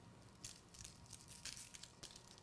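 Faint patter of salt sprinkled by hand onto raw strip steaks, in a few soft spurts.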